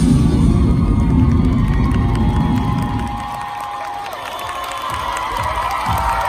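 An audience cheering and shrieking over loud dance music with a heavy beat; the music drops away about three seconds in and the cheering carries on.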